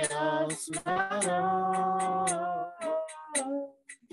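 Devotional kirtan chant sung in long held, gliding notes, with a classical guitar being strummed along.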